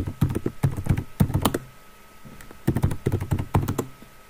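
Typing on a computer keyboard: two quick runs of keystrokes with a pause of about a second between them.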